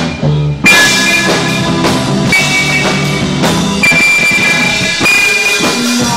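Live rock band playing loud, distorted electric guitars over bass guitar and drum kit, with long held high guitar notes and regular drum hits.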